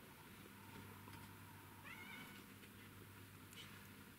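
Near silence: a faint steady low hum, with one brief, faint, high-pitched squeaky cry about two seconds in.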